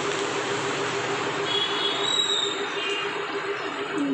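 A steady mechanical whooshing noise with a pulsing hum underneath, and a few brief high-pitched tones about halfway through.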